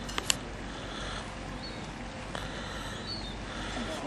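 Steady outdoor background noise, with two sharp clicks a fraction of a second in and a couple of faint, short high chirps later on.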